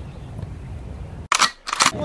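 Low steady background noise, then about 1.3 seconds in a camera-shutter sound effect: two sharp clicks close together.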